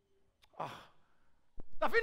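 A single short sigh, a breathy exhale with a falling voice, about half a second in; a man starts speaking near the end.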